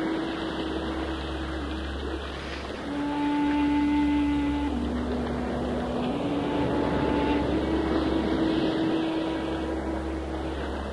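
Shakuhachi playing long, low held notes that step down in pitch and climb back up, over a steady rushing noise that swells louder twice.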